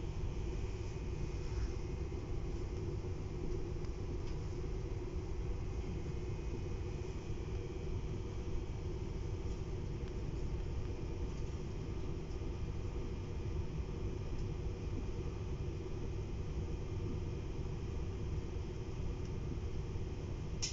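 Steady running noise of a TER regional train heard from inside the passenger carriage while it travels, a low even noise with no breaks.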